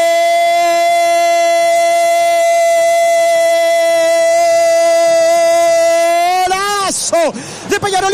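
A radio football commentator's goal call: one long, loud shout of "gol" held at a single steady high pitch for about six and a half seconds, then breaking into quick shouted syllables that swoop up and down near the end.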